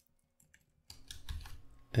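Computer keyboard keystrokes: a short run of quick key clicks starting about a second in, after a near-silent first second.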